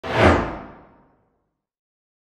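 Whoosh sound effect of an animated logo intro: it starts suddenly, peaks within a quarter second and fades out over about a second, its brightness falling away as it dies.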